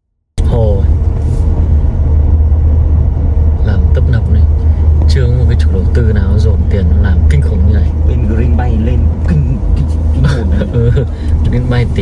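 Steady low rumble of a car cabin while driving slowly over a rough dirt road, with people talking indistinctly over it. The sound cuts in suddenly about half a second in, after silence.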